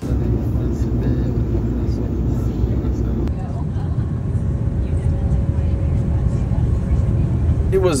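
Airliner cabin noise in flight: a steady low rumble of engines and rushing air, heard from inside the cabin.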